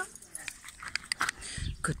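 A dog whimpering with a few short, high-pitched whines about a second in.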